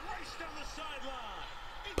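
Faint speech from a TV football broadcast's commentary, playing low in the background.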